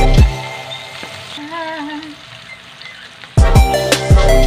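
Oil sizzling steadily around a milkfish fillet frying in a nonstick pan. Background music with a strong beat cuts out just after the start and comes back loudly near the end.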